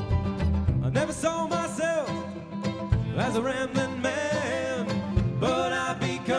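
Acoustic folk-bluegrass band playing: picked mandolin notes over a bass line, joined about a second in by a sung melody in long, wavering phrases.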